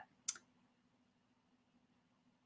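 A single short click about a third of a second in, then near silence with a faint steady low hum.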